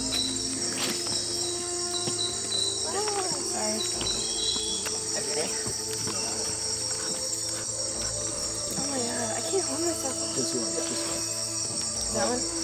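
Steady, high-pitched chorus of rainforest insects chirring without a break, with faint voices underneath.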